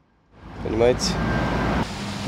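A brief silence at an edit, then steady outdoor street background noise that comes in suddenly, with a short fragment of a man's voice in it.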